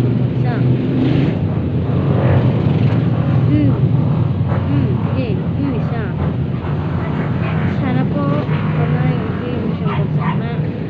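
Voices talking and calling in the background over a steady low hum.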